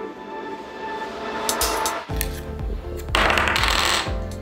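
Background music during an edit transition: held notes at first, then a bass beat coming in about two seconds in, with a rushing noise over the last second.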